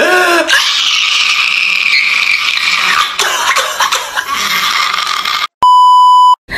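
A man wailing and sobbing loudly and hoarsely in a crying-meme clip, one long strained cry that cuts off abruptly. Near the end comes a steady high test-pattern beep tone, about a second long.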